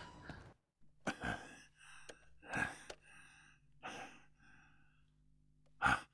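A man's breathing: a few short, faint sighs and gasps, spaced a second or so apart, after background music fades out at the start.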